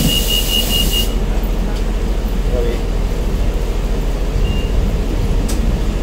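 Inside a city bus: steady engine and road rumble, with a burst of air hiss in the first second overlaid by a high, rapidly pulsing beep; the beep starts again right at the end.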